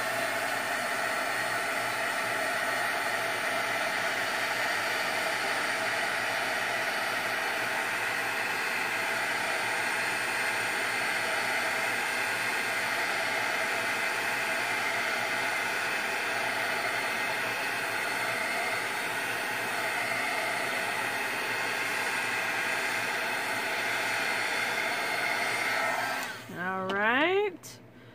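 Embossing heat gun blowing steadily, its fan and rushing air making an even noise, until it is switched off near the end.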